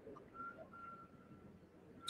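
Near silence: room tone, with a faint thin high tone lasting about a second.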